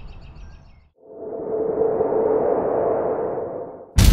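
Faint bird chirps fade out in the first second. Then a produced transition effect swells up: a whooshing rush with a steady hum at its centre, lasting about three seconds and fading just before the end.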